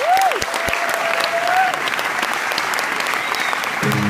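Concert audience applauding just after the band stops, with one long high call held over the clapping for about a second and a half near the start.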